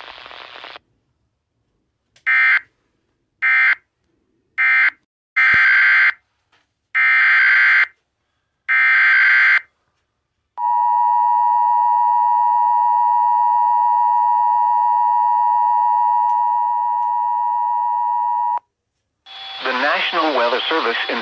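Emergency Alert System SAME data tones: six buzzing bursts, the first three short (end-of-message code closing the last warning) and the last three longer (the new alert's header). Then the EAS two-tone attention signal of 853 and 960 Hz, held steady for about eight seconds, which announces a severe thunderstorm warning.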